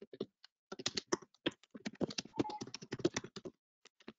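Typing on a computer keyboard: a quick, irregular run of keystroke clicks that starts just under a second in and stops about half a second before the end.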